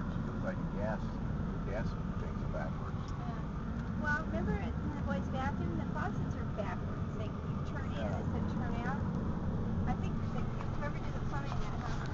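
Steady low road and engine rumble inside a moving Ford Freestyle's cabin at highway speed, with people talking quietly and indistinctly over it.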